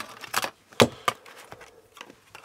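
Diagonal side cutters snipping through a black plastic case with a series of sharp snaps, the loudest a little under a second in.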